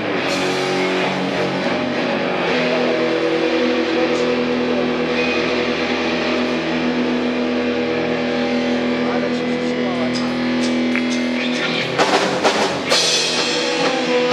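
Live rock band: electric guitars and bass holding long, sustained notes over a drum kit, with the drums and cymbals coming in hard about twelve seconds in.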